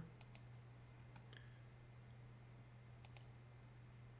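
Near silence over a steady low hum, with a few faint computer-mouse clicks: a pair just after the start, one about a second in, and another pair about three seconds in.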